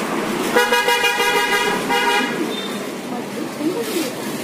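A vehicle horn honks twice, a long blast of over a second followed by a short one, over a steady background of street noise and voices.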